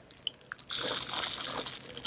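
Close-miked mouth sounds of licking the foamy top of an edible imitation Dove soap box: a few small wet clicks, then a steady wet lick lasting just over a second.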